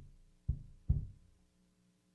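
Three dull thumps on a wooden pulpit, about half a second apart with the last the loudest, heard through its microphone over a steady electrical hum.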